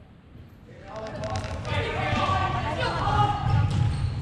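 Players and coaches shouting in a sports hall during a floorball game, starting about a second in, with knocks of sticks, plastic ball and footsteps on the court under the voices and the hall echoing.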